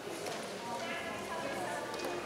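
Indistinct chatter of several people talking at once, with footsteps clicking on a hard floor.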